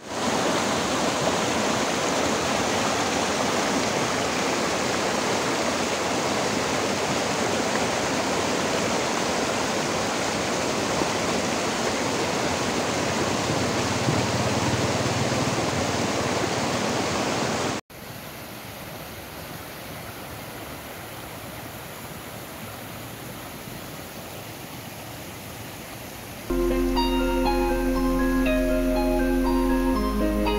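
A rocky stream flowing over stones in small cascades, a loud, steady rush of water. About 18 seconds in it cuts to a quieter, gentler flow of a shallow stretch of the stream, and near the end mallet-percussion music comes in.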